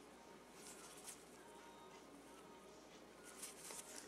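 Near silence, with a few faint, short scratches from a small nail cleanup brush wet with non-acetone remover working along the skin beside the nail: once about a second in and a few times near the end.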